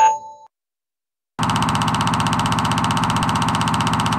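The last note of the music rings out and fades in the first half second. About a second and a half in, a loud, even, rapidly rattling buzz sound effect starts abruptly and runs steadily for about three seconds, cutting off suddenly just after the end.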